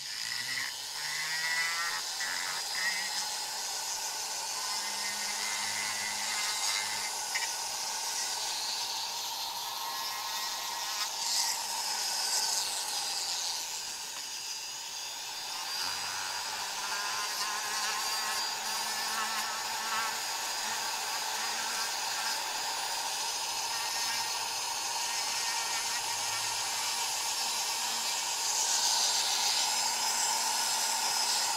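Electric rotary tool with a small abrasive point grinding the port edges inside a two-stroke motorcycle cylinder bore, chamfering them after boring: a steady high whine with a scratchy grind, easing briefly about halfway through and a little louder near the end.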